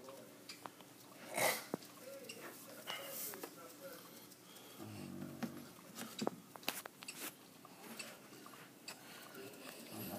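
Dumeril's monitor swallowing a mouthful of ground-turkey mash: scattered small wet clicks and smacks of the jaws, with one short breathy noise about a second and a half in.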